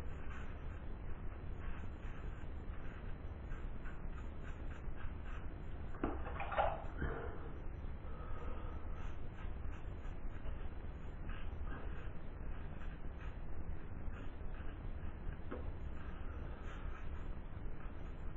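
GEM Junior single-edge razor blade scraping through lathered stubble in a run of short strokes, on an against-the-grain pass, over a low steady hum; a brief louder sound comes about six seconds in.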